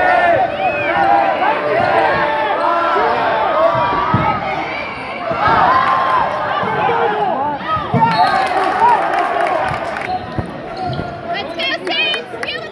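Indoor basketball game: many sneaker squeaks on the hardwood court and the ball bouncing, over the voices of players and spectators in the gym. From about eight seconds in there is a patter of clapping.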